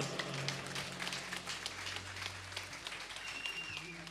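A large crowd in a hall applauding, fairly faint, with a low steady tone underneath during the first half.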